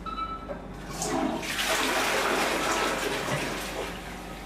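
Toilet flushing: a rush of water that starts about a second in, is loudest through the middle and dies away near the end.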